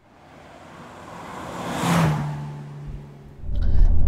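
Carver One three-wheeler driving past, its small kei-car engine and tyre noise swelling to a peak about two seconds in and then fading away. Near the end a loud, low engine drone from inside the moving car's cabin takes over.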